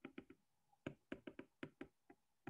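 Faint, irregular taps of a stylus tip on a tablet's glass screen during handwriting, about ten short clicks.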